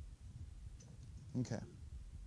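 Faint clicks from drawing on a tablet computer, over a low steady room hum, with a man saying "Okay" near the end.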